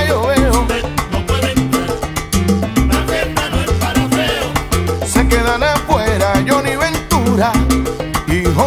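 Salsa band playing a passage with no sung words: a steady repeating bass line and dense percussion under a wavering melodic line.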